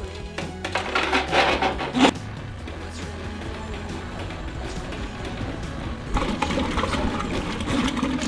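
Electric drum drain-cleaning machine running steadily, its motor spinning the cable as it is fed into a blocked septic drain line, with busier stretches early on and near the end. Background music plays along with it.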